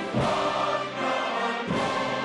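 Military brass band playing a national anthem, with a line of honour-guard soldiers singing along.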